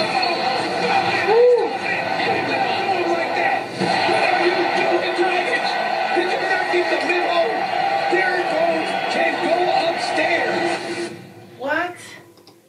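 NBA game broadcast playing back: arena crowd noise under a television commentator's voice, rising around a second and a half in. The broadcast sound cuts off about a second before the end.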